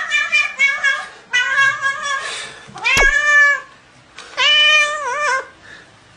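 Grey tabby cat meowing loudly and repeatedly while hands hold it down on the floor: about five calls, the longest near the middle of the first half and the last one wavering in pitch.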